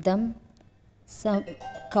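A woman preaching in Telugu, pausing briefly between phrases, with a short faint ringing tone under her voice about a second and a half in.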